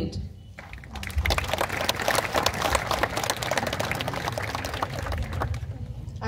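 Audience applauding: many hands clapping together, starting about half a second in and dying away just before the end.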